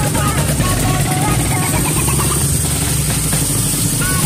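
Drag-race motorcycle engine idling at the start line, a steady low rumble, under a voice and music.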